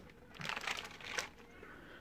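Faint crinkling of masking paper as the paper-and-tape-wrapped tray is handled, dying away after about a second and a half.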